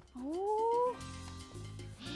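A single rising, meow-like cat cry lasting under a second, then background music with held notes over a bass line.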